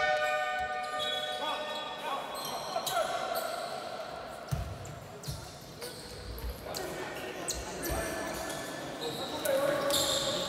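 Basketball court sounds in a large sports hall: an electronic game buzzer's steady tone ends about a second in. After it come voices and a few thumps of the ball bouncing on the wooden floor while play is stopped.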